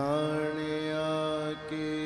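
Male kirtan singer holding one long sung note, with a short break about one and a half seconds in.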